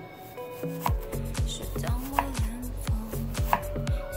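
Chef's knife chopping a shallot on a wooden cutting board, a series of sharp, irregular knocks over background music whose bass line comes in about a second in.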